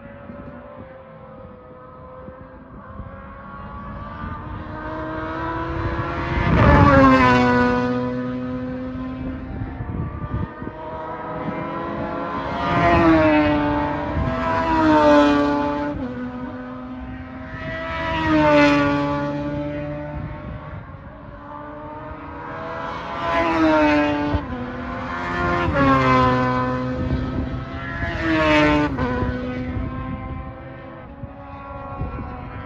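Race cars passing at speed one after another, about seven loud pass-bys. Each engine note rises as the car approaches and drops in pitch as it goes past.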